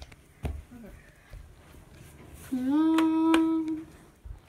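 A voice holds one long steady note for about a second and a half near the end, crossed by two sharp clicks. A single thump comes about half a second in.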